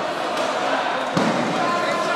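Many voices of a crowd talking and calling out at once in a large hall, with one loud bang about a second in.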